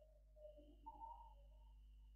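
Near silence: room tone with a steady low electrical hum and a faint high whine, and a few faint wavering sounds in the first second and a half.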